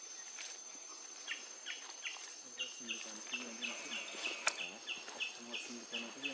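Forest ambience: a steady high-pitched insect whine. From about a second and a half in, a rapid run of short, falling chirps joins it, about three a second, with a single sharp click midway.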